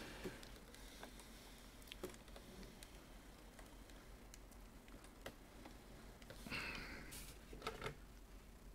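Faint scattered clicks and light handling noises from things being moved about, with a brief rustling scrape about six and a half seconds in and a couple of clicks near the end.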